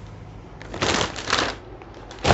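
A folded, packaged saree rustling as it is handled and turned over on a table: two short bursts about half a second apart.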